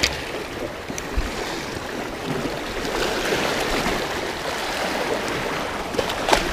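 Sea surf rushing and washing through the gaps between shoreline rocks. The rush swells about halfway through, and there are two small clicks, one at the start and one about a second in.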